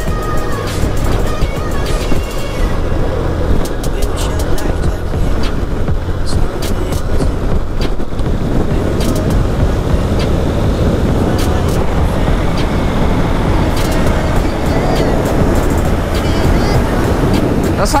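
Motorcycle engine running at road speed under a steady rush of wind on the helmet-mounted microphone, while the bike rides alongside and passes a heavy truck.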